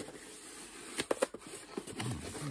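A cardboard box being handled: a few short light knocks and taps about a second in, and one more near the end.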